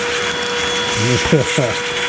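Electric drill running at a steady pitch, drilling out aluminium rivets from a computer case: a constant whine over a hiss.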